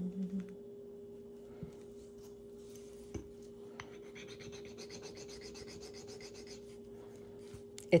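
The metal bezel of a turquoise pendant is rubbed back and forth on a black touchstone, making a rapid, even, scratchy rasp that starts about halfway through. This is a streak test to check whether the unmarked metal is sterling silver.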